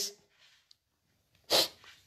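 A man's single short, sharp burst of breath through the mouth or nose, about a second and a half in, after a near-silent pause that follows the tail of his last word.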